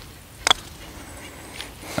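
Two putters striking golf balls almost at once, a sharp double click about half a second in, over quiet outdoor background.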